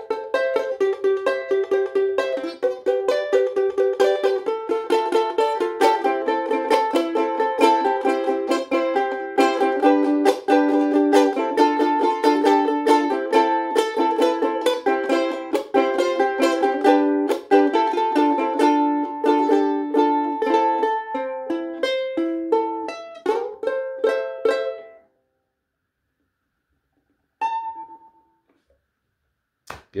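Ukulele played chord-melody style: rapid, even strums of full chords with the melody notes on top, over an A minor, C, G, D minor progression. The playing stops about 25 seconds in, and a single note sounds briefly near the end.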